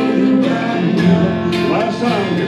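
Live acoustic duo: two steel-string acoustic guitars strummed in a steady rhythm, with a man singing over them.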